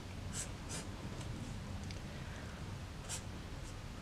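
Faber-Castell Pitt felt-tip pen drawing on sketchbook paper: faint scratchy pen strokes, a few standing out near the start and about three seconds in.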